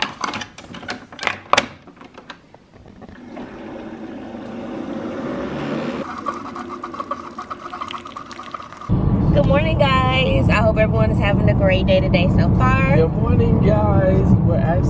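Keurig single-serve coffee maker: a K-cup pod clicks into place and the brewer is closed, then the machine's pump runs and coffee streams into the mug, a rising hiss with a steady hum for several seconds. About nine seconds in it gives way to voices over loud car cabin road noise.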